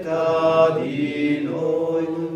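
A man chanting a slow liturgical melody in long held notes, with a change of note about a second in.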